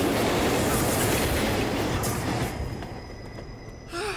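A subway train passing close by on the tracks: a loud, dense rush of rail noise that fades away from about two and a half seconds in.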